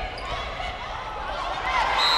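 Athletic shoes squeaking on a hardwood volleyball court: short, repeated squeals of varying pitch as players move through a rally. Voices carry in the hall.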